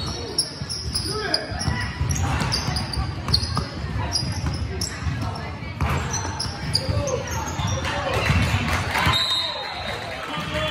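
Basketball bouncing on a hardwood gym floor during play, with sneakers squeaking in short high chirps and players' voices calling out, echoing in the large hall.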